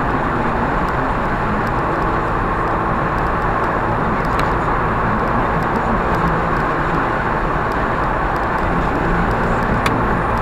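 Inside the cabin: a remapped, de-catted car engine with a stainless exhaust and an open induction kit, droning steadily at a constant cruise of about 4000 rpm, mixed with tyre and road noise.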